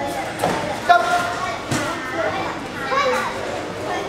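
Several voices shouting and calling over one another, with a few short sharp knocks, the loudest about a second in.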